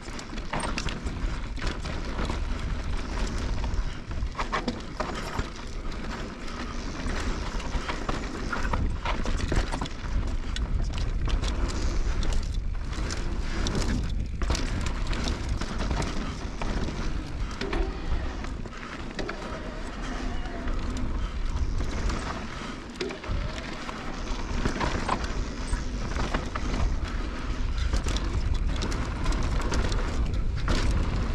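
Wind buffeting the action-camera microphone on a 2020 Norco Range VLT electric mountain bike descending fast, with tyres crunching over dry dirt and rocks and many short rattles and knocks from the bike over bumps.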